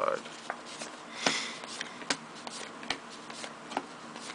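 Trading cards being handled and flipped through by hand: scattered soft card-stock clicks and snaps, with a longer sliding rustle about a second in.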